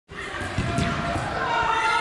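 Several dull thumps of a ball bouncing, then voices of people talking.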